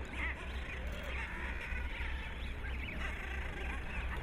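Seabird colony ambience: many birds calling at once in a steady, faint, overlapping chatter, with a low rumble underneath.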